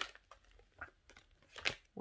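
Oracle cards handled and slid off a deck: a few soft card clicks and rustles, with a sharper snap of a card near the end.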